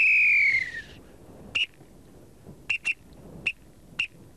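Shepherd's whistle blown as signals to herding dogs: one long note that slides down in pitch, then a string of short, sharp pips.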